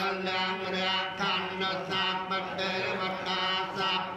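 Theravada Buddhist chanting in Pali: a continuous, steady recitation on a held pitch, with no break.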